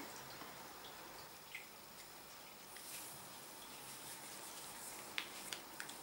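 Faint handling sounds of hand sewing: a needle and thread worked through a soft stuffed fabric doll head, with a few light clicks near the end.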